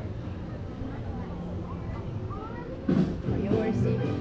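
Low murmur of a crowd in an outdoor ride queue; about three seconds in, the ride's loudspeaker audio sets in, suddenly louder.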